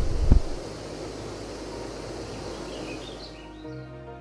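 Steady rushing noise of a forest waterfall, with a few faint bird chirps near the end. A low thump sounds just after the start, and a soft sustained music chord comes in near the end.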